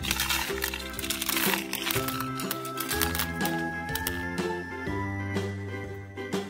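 Children's song backing music playing, with a brief rattle of candy-coated chocolates poured from a plastic cup into a plastic toy tub during the first couple of seconds.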